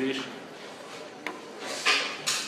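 A single click about a second in, then a short rustling scrape near the end.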